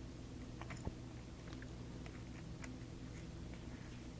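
Faint, scattered small clicks of screws and the small plastic differential case being handled and fitted together, one click a little louder about a second in, over a low steady hum.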